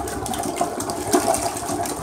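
Rubber plunger pumped fast in a clogged toilet bowl, the water sloshing and splashing with each quick stroke as it works at the clog.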